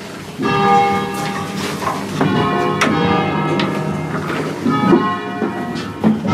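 A ring of church bells rung by hand with ropes, the bells striking one after another about every half second to a second, each strike's tone ringing on under the next.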